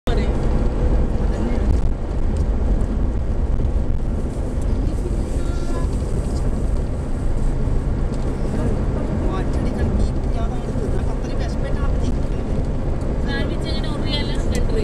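Steady low rumble of a car's engine and tyres on the road, heard from inside the cabin while driving, with faint voices in the background.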